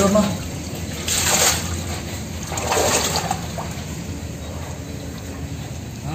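Shallow water splashing and sloshing in a concrete culvert pipe as a person wades through it, in surges about a second in and again around three seconds in.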